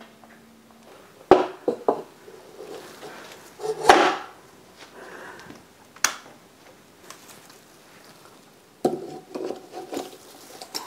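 Knocks and clunks of an artificial Christmas tree's sections being handled and fitted together, with rustling of its stiff frosted branches. A few sharp knocks come early, the loudest about four seconds in, and a cluster near the end.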